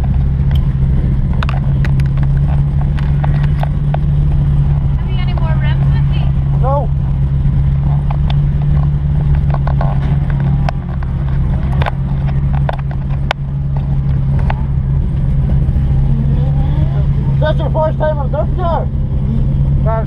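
Nissan S15 Silvia drift car's engine running at a steady, unchanging note, heard from inside the cabin, with scattered light clicks and rattles.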